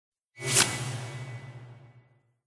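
Whoosh sound effect for a logo reveal: it swells in sharply and peaks about half a second in, then leaves a low humming tail with a faint high ring that fades out over the next second and a half.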